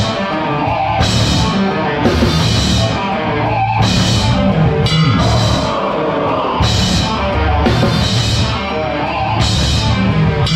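A live metalcore band playing loud and heavy, heard close up from the drum kit: a Pearl Masters Maple kit with Zildjian cymbals. Hard-hit drums run under distorted guitar, with cymbal crashes landing about once a second.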